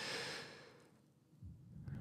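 A man exhales into a close microphone as a sigh-like breath that fades over under a second. A faint breath follows near the end, just before he speaks again.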